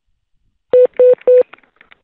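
Three short telephone beeps at one pitch on the line, about a quarter second apart, followed by a few faint clicks as the call connects.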